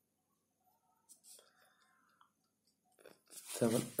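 Faint scratching of a pencil on paper and small handling sounds of drawing instruments, with a brief patch of pencil-stroke noise about one and a half seconds in. A man starts speaking near the end.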